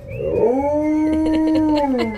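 Alaskan Malamute howling: one long howl that rises at the start, holds a steady pitch, and drops near the end. The dog is mad after being given a bath.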